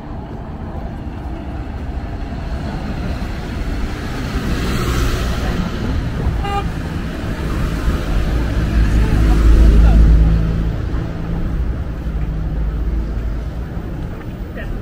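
A motor vehicle's engine running as it approaches and passes close by, loudest about ten seconds in, with a short horn toot about six and a half seconds in.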